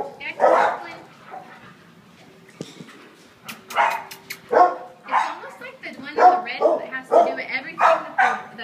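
Dogs barking and yipping in a shelter kennel, with a few sharp clicks about three and a half seconds in.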